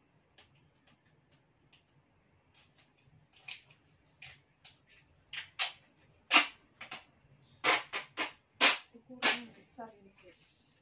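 Packing work on a cardboard shipping box: a run of sharp, irregular snaps and crackles, faint at first, then thicker and louder from about three seconds in, the loudest near the end.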